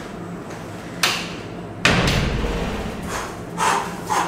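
A door being shut, with a loud thud just under two seconds in that dies away over about a second. A softer noise comes about a second in, and two short soft rustles or steps come near the end.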